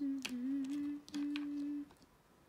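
A person humming with closed lips: two long notes at about the same pitch, the first wavering slightly and the second held steady, with a few light clicks.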